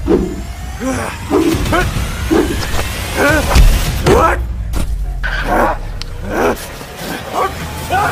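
A rapid run of short wordless shouts, grunts and cries from men fighting, over background music.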